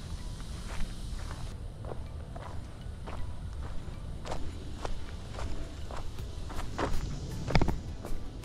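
Footsteps on a wood-chip mulch path at a steady walking pace, about two steps a second, with one heavier step near the end.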